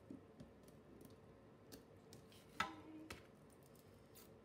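Quiet handling of a ruler and washi tape on a planner page: scattered faint clicks and taps, with one sharper tap that rings briefly a little past halfway and another about half a second after it.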